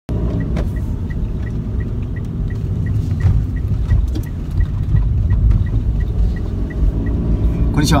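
Car cabin noise while driving: a steady low road and engine rumble, with a turn-signal indicator ticking about three times a second that stops about seven seconds in.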